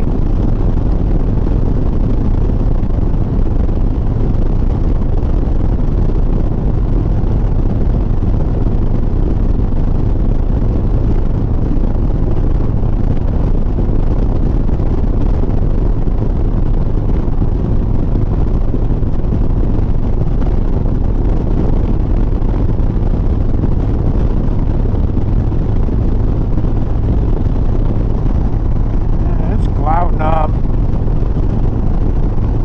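Harley-Davidson Sport Glide's V-twin engine running steadily at highway cruising speed, mixed with wind rush on the handlebar-mounted camera's microphone.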